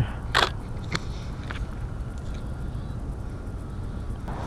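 Nikon D800 DSLR shutter firing once right after a countdown, a short crisp snap about half a second in, with a lighter click about half a second after it, over steady background hiss.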